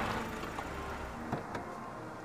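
A car's engine running with a low, steady hum as the car stands in a parking space. There are a couple of faint clicks about one and a half seconds in.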